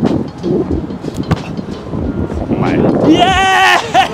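Wind buffeting the microphone under low, indistinct voices, then near the end a loud, high, wavering vocal call from a person, held for under a second.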